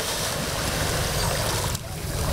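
Pond water splashing and churning from a scuba diver who has just jumped in, a steady rush of water noise that dips briefly near the end.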